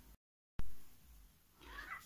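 A moment of dead silence at an edit cut, then a sharp click about half a second in with a short hiss dying away after it. Near the end comes a faint cat's meow.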